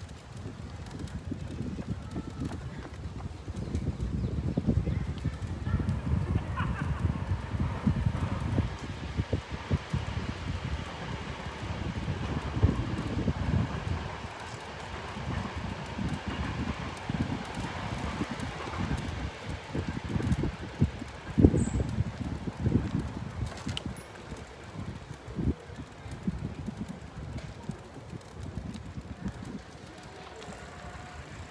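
Wind rumbling on the microphone of a moving camera, rising and falling in gusts, with faint voices in the background.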